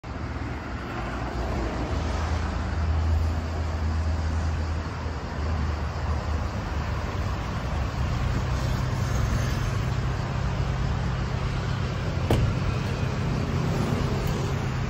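Mercedes V-Class van's engine running close by, a low steady hum, with a single sharp click near the end as the sliding side door is unlatched.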